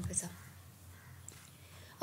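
A voice finishes a word at the very start, with a short breathy hiss just after. Then comes a quiet pause with only a faint steady low hum of room tone.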